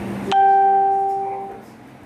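A single bell-like chime, struck once about a third of a second in and ringing on one clear note with fainter overtones, dying away over about a second and a half.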